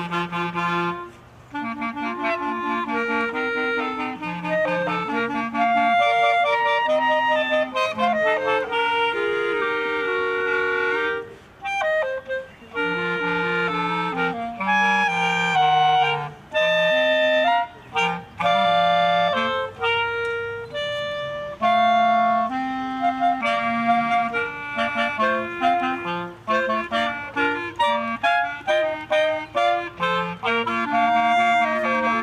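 A school wind band playing a piece, with a clarinet carrying the melody over the ensemble and a few brief breaks between phrases.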